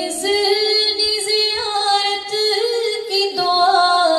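A woman singing a naat unaccompanied, in long held notes with slight wavers, stepping up to a higher note about three seconds in.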